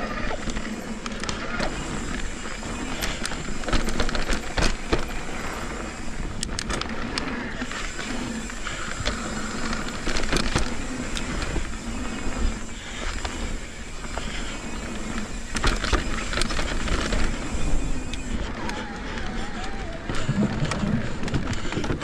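Mountain bike riding fast down a dusty dirt trail: tyres rolling and crunching over dirt and gravel with frequent sharp rattles and knocks from the chain and frame over bumps, and wind rumbling on the chin-mounted camera.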